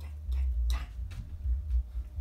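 Uneven low thumps with a few short rustles and clicks, the sound of a person moving and stepping about a room, the loudest rustle a little under a second in.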